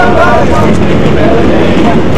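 Subway train in motion: a loud, steady rumble and rattle of the car on the rails, with voices over it early on.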